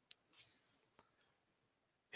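Near silence with a few faint, short clicks in the first second.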